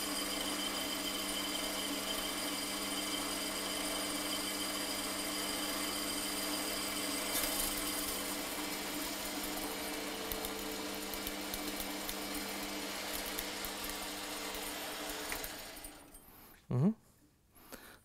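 Holzmann ED 750 FDQ benchtop metal lathe running steadily with a constant whine, turning a stainless-steel sleeve. The machine stops about sixteen seconds in.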